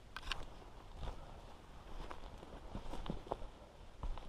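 Quiet footsteps on a forest floor of needles and litter, with scattered small snaps and rustles of twigs and brush underfoot.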